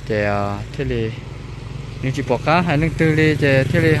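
Speech: people talking in short phrases, with a low steady hum underneath from about halfway through.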